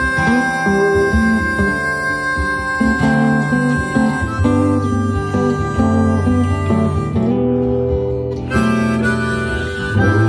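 Harmonica playing a melodic solo over acoustic guitar backing in the instrumental break of a country song.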